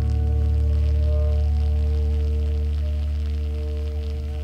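A jazz band holds a sustained closing chord over a deep, steady low note. The chord slowly fades as the song ends.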